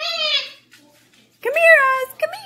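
A cockatoo giving two short, high-pitched, meow-like vocal calls, about half a second each: one at the start and one near the end.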